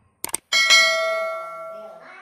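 Subscribe-button animation sound effect: a quick double mouse click, then a bright bell chime that rings out and fades over about a second and a half.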